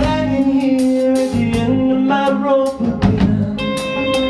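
Live rock band playing an instrumental passage: drums on a Gretsch kit and guitars, with long held melodic notes on top. The deep bass thins out at first and comes back in about three seconds in.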